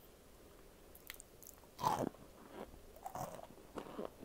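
A person biting into a chunk of cornstarch with a loud crunch a little under two seconds in, then chewing it with a few softer crunches.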